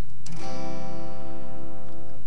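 Acoustic guitar strummed once on a C major chord about a third of a second in, the chord left ringing.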